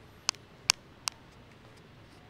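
Three sharp clicks about 0.4 seconds apart, over quiet room tone.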